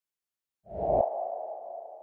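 A low thump about two-thirds of a second in, carrying a ringing mid-pitched tone that fades slowly.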